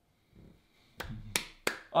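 Three quick, sharp hand claps about a third of a second apart, starting about a second in.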